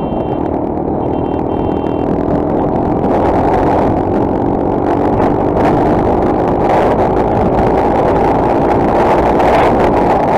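Motorcycle engine running while accelerating along a highway, with wind noise on the microphone. The sound grows louder after the first few seconds as speed rises.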